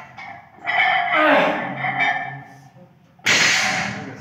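A man's strained vocal cry of effort during a barbell deadlift, drawn out over a second or so and falling in pitch, then a sudden loud, sharp shouted exhalation ('Ах!') near the end.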